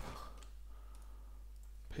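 Faint clicking of a Dell XPS 13 9360 laptop's keyboard as a command is entered in the terminal.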